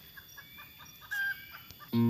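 Junglefowl calling faintly: a run of quick clucks, then a short, louder call about a second in.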